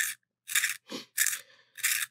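A pencil being turned in the wood-shaving first stage of a Blackwing Two-Step Long Point sharpener: the blade cuts the wood in four short scraping strokes, about one every half second.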